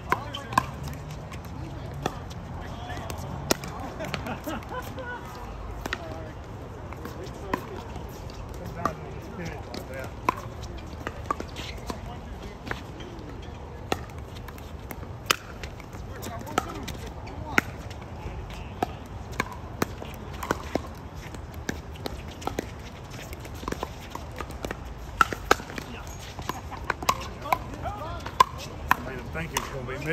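Pickleball paddles striking a hard plastic ball: sharp pops at irregular intervals, coming more quickly near the end.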